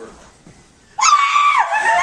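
A woman's high-pitched scream of surprise, breaking out suddenly about a second in after a near-quiet moment and held on one pitch.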